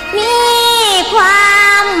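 A woman singing a line of an Isan lam phloen duet in Thai, in the slow sung introduction. She holds long notes that slide down in pitch at their ends.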